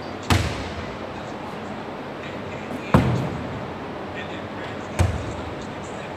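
Three single thuds of balls landing on a hardwood gym floor, a little over two seconds apart, each echoing through a large gym.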